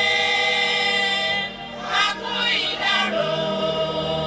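Women singers of a cultural troupe singing together into a microphone, holding long notes, with a short break about one and a half seconds in before the next phrase.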